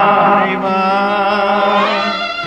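Tamil devotional song to Lord Murugan: a long sung note held over the instrumental accompaniment, shifting pitch about half a second in and sliding upward near the end.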